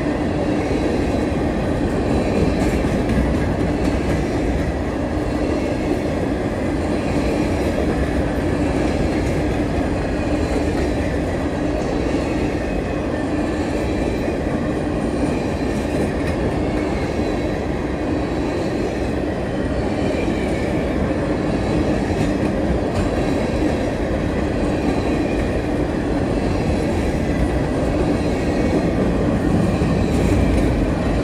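A freight train of empty covered hopper cars rolling steadily past, with a continuous rumble and clatter of wheels on the rails.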